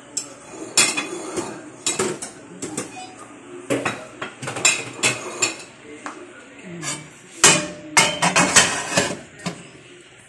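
Cutlery clinking and knocking against a ceramic plate in irregular sharp clinks, loudest and busiest about seven to nine seconds in.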